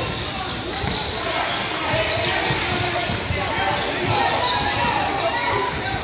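Basketball game sound echoing in a large gym: a ball bouncing on the hardwood floor amid an indistinct hubbub of players' and spectators' voices.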